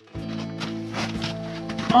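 Background music with steady held low notes, after a brief dropout at the start.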